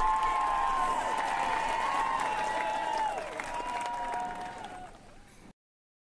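Audience applause and cheering voices. The crowd fades down over the last couple of seconds and then cuts off abruptly.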